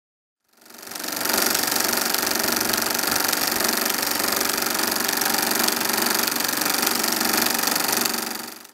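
Film projector running, a fast, even mechanical clatter that fades in within the first second and then holds steady.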